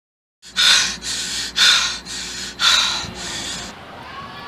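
A young man panting hard, loud quick breaths in and out, about six breaths in three seconds. The breathing begins about half a second in and stops shortly before the end.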